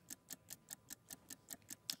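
Faint, fast clock-like ticking, about five ticks a second: the ticking sound effect that runs under an on-screen sale countdown timer.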